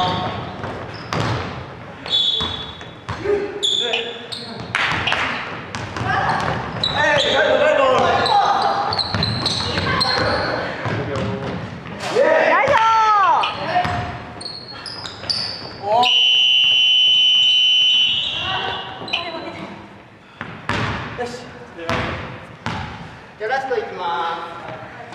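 Basketball being dribbled and bounced on a wooden gym floor, with players' voices calling out in the echoing hall. About two-thirds of the way through, a steady high electronic buzzer-like tone sounds for about two seconds.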